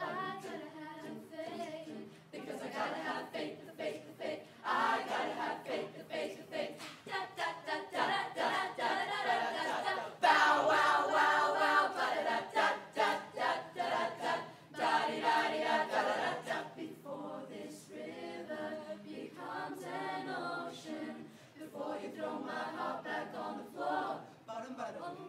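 Mixed youth chamber choir singing a cappella in harmony, swelling to a louder passage about ten seconds in, then softening again.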